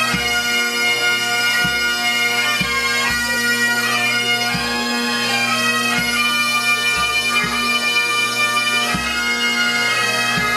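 A pipe band playing: Highland bagpipes sounding a steady drone under the chanter melody, with a bass drum beating underneath about once a second.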